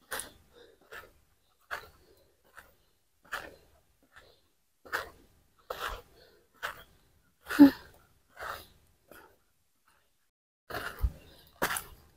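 A woman breathing hard into a clip-on microphone after a steep uphill climb, in short puffs of breath a little more than one a second.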